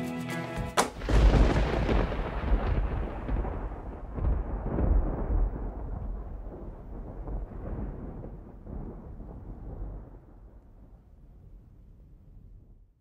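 A song stops with a sharp hit just under a second in. A deep, rolling, thunder-like boom follows and fades away over about ten seconds.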